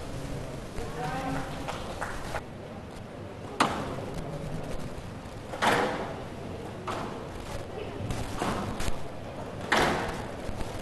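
Squash rally on a glass court: sharp cracks of the ball off rackets and walls, one every second or two, in a reverberant hall.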